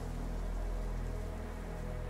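Soft background music: a steady drone of held low notes with no beat or change.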